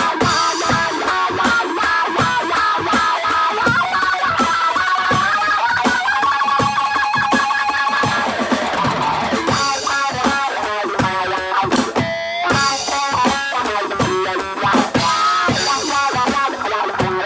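Solid-body electric guitar playing an amplified, bluesy rock instrumental passage of quickly picked notes. A few notes are held in the middle, and a note slides down about nine seconds in.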